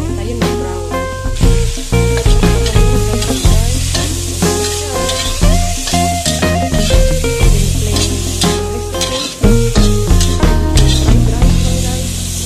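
Oil sizzling in a wok while a metal spatula stirs and scrapes, first minced garlic and then diced carrots, with sharp scraping clicks throughout. Background music with a strong bass line plays over it.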